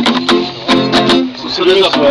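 Acoustic guitar strummed by hand, a run of chord strokes each ringing on into the next.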